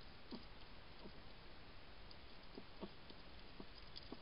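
A European hedgehog eating close up: faint, irregular smacking and chewing sounds, about five in four seconds, over a steady hiss.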